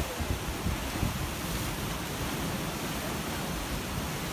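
Sea surf washing against the rocks below, under steady wind buffeting the microphone.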